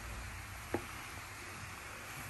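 Faint, steady hiss of water boiling in a paper saucepan on an electric hot plate, with a single short click about three-quarters of a second in.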